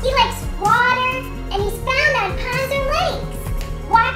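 Background music with a high-pitched, childlike voice over it, chattering in sounds that are not words.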